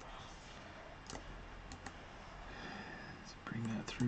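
Scattered sharp clicks from a computer keyboard and mouse, a few each second, over a faint steady hum, with a brief low murmur of a man's voice near the end.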